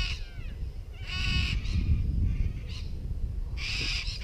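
Harsh bird calls: short ones at the start and about a second in, then a longer call near the end, over a steady low rumble.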